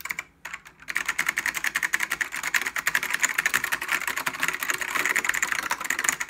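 Rapid typing on a Matias Tactile Pro mechanical keyboard, its clicky ALPS-style key switches clacking. A few keystrokes come first, then a short pause, then a fast, steady run of keystrokes from about a second in.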